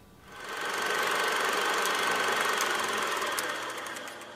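Old film projector running, a steady mechanical whirr and clatter that swells in about a third of a second in, with faint crackles toward the end.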